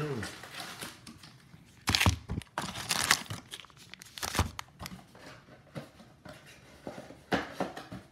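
Trading card packaging crinkling and tearing as it is ripped open by hand, in several sharp rasps. The loudest come about two and three seconds in, with more near the middle and near the end.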